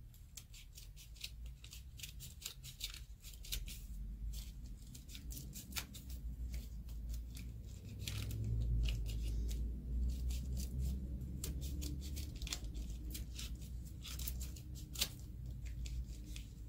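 Large scissors snipping thin white paper in many quick, short cuts, over a low rumble that is strongest about eight to twelve seconds in.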